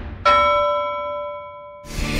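A single bell-like chime struck once, ringing with several clear tones that slowly fade before being cut off abruptly near the end.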